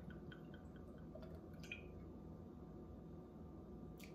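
Whiskey poured from a glass bottle into a champagne flute: a few faint glugs and drips in the first second or two, then quiet room tone.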